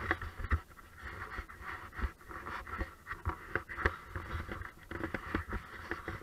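Mountain bike coasting along a dirt singletrack: the rear hub's freewheel buzzes in a fast run of clicks, mixed with irregular knocks and thumps from the bike rolling over the rough trail.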